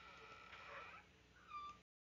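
Near silence with faint animal calls in the background: a drawn-out call in the first second and a short, high-pitched cry about a second and a half in, after which the sound cuts off completely.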